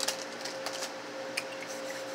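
Steady electrical hum of refrigerated drink coolers, with a few faint clicks and rustles in the first second or so.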